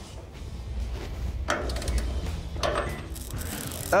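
A wrench tightening the radius-arm bolts on a Ford Bronco's front axle, giving a couple of faint metallic clicks about a second and a half in and near three seconds in, over a low background rumble.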